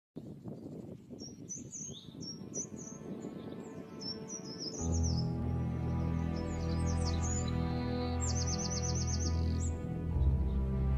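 Small birds singing: repeated short chirping phrases, then a rapid even trill of about eight notes near the end, over outdoor background noise. About five seconds in, soft music with long held low notes comes in underneath.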